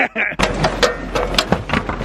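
A man laughing hard in quick, breathy bursts. Under it is a low handling rumble as the camera is swung about.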